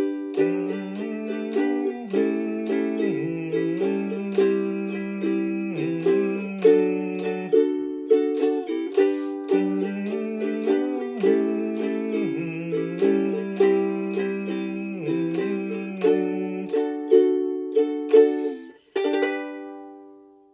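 Ukulele playing a chord sequence in G major in a steady rhythm, with a man humming the melody beneath it in two long phrases. The humming stops near the end, and a final chord is left to ring out.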